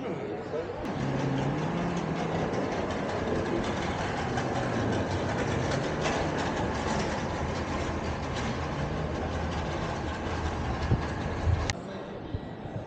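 Airport terminal hall ambience: a steady rush of noise with indistinct voices, and a sharp click near the end.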